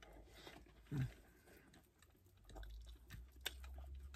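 A person chewing and biting food up close, with small clicky mouth sounds and a short low thump about a second in. A low steady rumble comes in about halfway through.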